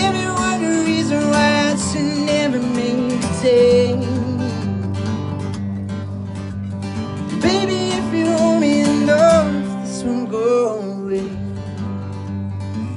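A man singing live into a microphone over his own acoustic guitar. He sings two phrases, the first over the opening few seconds and the second from about halfway through, with the guitar ringing on in the gap between them.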